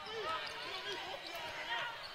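Basketball arena ambience: a steady murmur of crowd and voices in a large gym, with a basketball being dribbled on the hardwood court.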